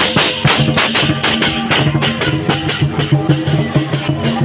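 Lion dance percussion: a large drum and hand cymbals struck in a fast, dense rhythm, with sustained low notes that change pitch sounding underneath.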